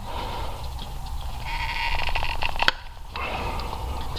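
Creaking rasp of stiff hoses and plastic fittings being pried and worked loose by hand on an engine's intake manifold, lasting about a second near the middle and ending in a sharp click.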